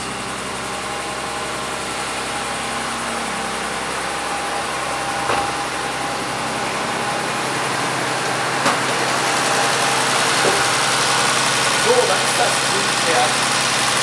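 Mercedes-Benz W116 280S's carburetted twin-cam straight-six idling steadily, growing louder as the bonnet is opened, with a couple of sharp clicks midway. It runs evenly, without the rattle of valves out of adjustment; the valve clearances are freshly set.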